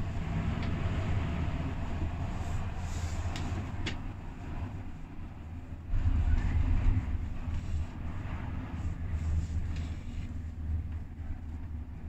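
Gondola lift cabin running along its cable, a steady low rumble inside the cabin with a few light clicks. About six seconds in the rumble rises for a second or so as the cabin passes a support tower and rolls over its sheaves.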